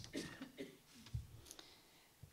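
Faint clicks and a soft thump of paper handling as a sheet is turned over at a podium, picked up by a handheld microphone.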